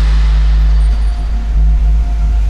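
Podcast intro theme music: a loud, steady deep bass rumble with a low tone above it that drops out briefly about a second in.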